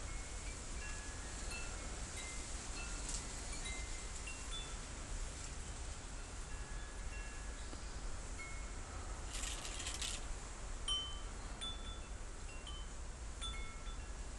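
Chimes tinkling: scattered single notes at several different pitches, irregularly spaced, over a steady low hum. A brief rustle about nine seconds in.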